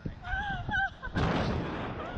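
Wind buffeting the onboard camera's microphone on a slingshot ride, in a loud rushing gust from about a second in. Before the gust, a rider gives a short high-pitched cry.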